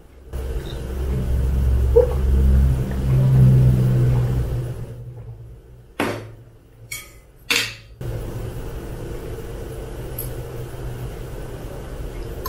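Close-miked gulping and swallowing of orange juice from a glass, a low rumbling run of gulps for about four and a half seconds. Then come three sharp knocks, from about six seconds in, as the glass comes down toward the table.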